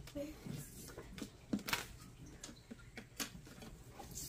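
Faint rustles and light taps of paper bills being handled and laid on a tabletop: a handful of short, separate sounds spread through.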